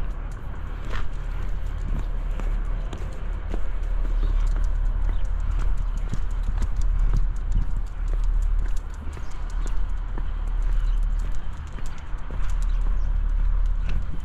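Footsteps walking steadily along a tarmac alley, over a steady low rumble.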